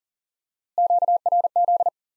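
A single-pitch Morse code tone sending "QRZ" at 40 words per minute, keyed on and off in three rapid letter groups lasting just over a second, starting a little before the middle.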